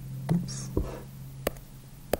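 Breathing and a few small mouth clicks from a man pausing between words, with one short breath about half a second in, over a steady low electrical hum.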